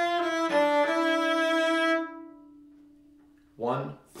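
Cello bowed on the A string in third position: a short run of sustained notes stepping down in pitch, the last one fading away.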